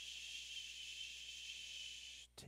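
A man's long, steady "shhh" exhale through the teeth, like quieting someone, done as a yoga breathing exercise.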